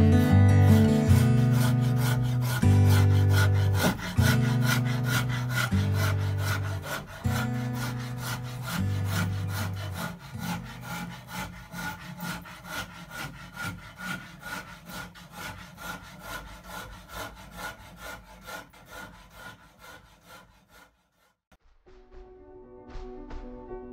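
A hand saw cutting wood in quick, even back-and-forth strokes, about four a second, growing fainter toward the end. Guitar music fades out under it over the first half.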